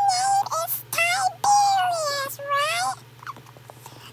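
A very high-pitched, squeaky voice making a run of short wordless sliding calls, which falls quiet about three seconds in.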